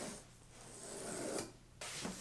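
Cardboard of an iMac shipping box scraping and rubbing as it is pulled open, in two stretches with a short break about one and a half seconds in.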